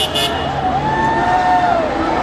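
Road traffic: a car passing, over a steady background of street noise.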